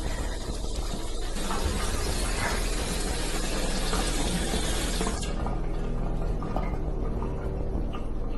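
Kitchen faucet running into the sink, a steady hiss of water that cuts off abruptly about five seconds in.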